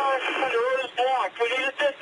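Police radio transmission: a voice calling for help over a two-way radio, thin and narrow-sounding, speaking without a break.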